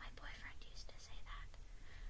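A faint whispered voice, a few breathy words without any voiced tone.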